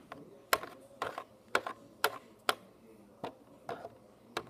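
A plastic My Little Pony figure tapped along the plastic floor of a toy playhouse as it is walked, making a series of sharp clicks about twice a second.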